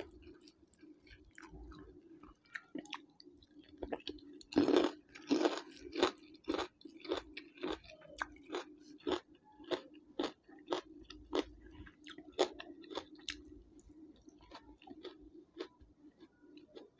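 Close-miked chewing of a mouthful of crunchy food, loudest about five seconds in, then settling into sharp crunches about twice a second over a steady low hum.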